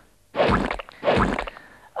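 Two short, noisy sound-effect bursts, each about half a second, one after the other: a transition sting between segments of a children's TV programme.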